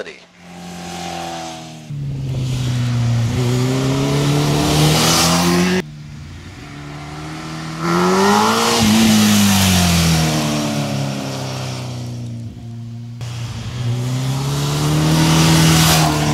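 2006 Kawasaki Ninja ZX-10R's inline-four engine revving under acceleration in several short clips joined together, its pitch climbing. Near the middle the bike passes by, the pitch rising then dropping.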